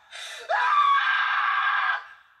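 A person screaming in a film soundtrack: a short gasping breath, then about half a second in a long, shrill scream that swoops up and holds for about a second and a half before cutting off.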